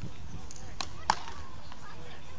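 Beach tennis paddles striking the ball during a rally: three sharp hits within about a second, the last and loudest about a second in.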